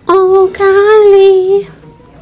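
A high voice sung or called out on two held notes, a short one and then a longer one lasting about a second, loud against the quiet room.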